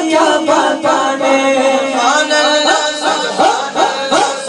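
Devotional vocal chanting, unaccompanied by instruments, led by one man singing into a microphone, with overlapping male voices.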